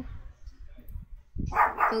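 A dog barks twice in the background, about one and a half seconds in.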